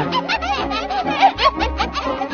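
Women shrieking with laughter, a rapid, high-pitched cackling, over background music.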